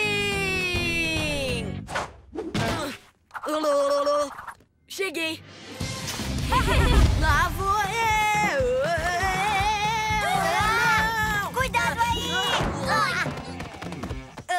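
Cartoon puppy voices crying out over background music: a falling cry in the first two seconds, short calls around three to five seconds, then a long, wavering wail from about six seconds to near the end.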